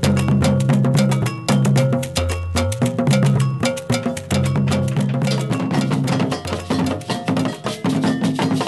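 West African drum ensemble music: a fast, dense hand-drum rhythm with a ringing bell pattern on top and a repeating low part underneath.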